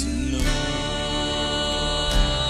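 Contemporary worship song played by a band, with long held chords over a steady bass.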